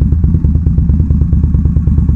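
Loud Indian V-twin motorcycle engine running at low revs with a steady, even beat of about twelve pulses a second.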